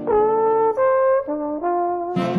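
Jazz trombone playing a short, nearly unaccompanied phrase of four held notes that move up and down in pitch, in a 1950s big-band recording.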